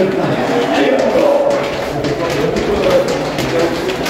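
A group of rugby players shouting "allez" over and over together, many men's voices overlapping in a rhythmic chant.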